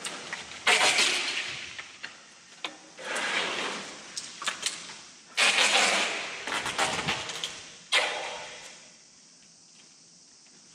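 A large dead tree being dragged and shoved: its dry branches scrape and rustle across a sheet-covered floor in four surges, each starting suddenly and fading over a second or two, with small snaps and clicks of twigs between.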